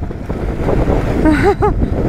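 Wind buffeting the microphone of a camera on a moving motorcycle, with the bike's engine running underneath at road speed.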